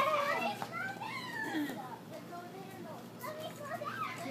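Children's voices: talk and calls from children at play, with no other distinct sound standing out.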